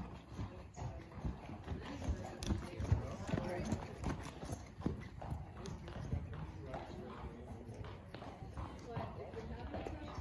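Hoofbeats of a horse moving over arena sand: a continuing run of dull low thuds.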